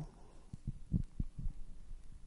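A run of soft, low thuds, several a second and unevenly spaced.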